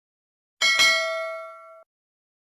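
Notification-bell sound effect: a bright ding struck twice in quick succession about half a second in, its ring of several tones fading before it cuts off near the end. It marks the channel's notification bell being switched on.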